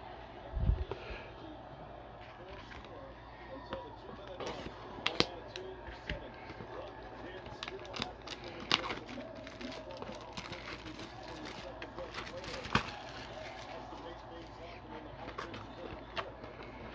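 Cardboard card box handled and its flap pried open: scattered taps, clicks and scrapes of cardboard under the fingers, with a low thump about a second in and sharper clicks later.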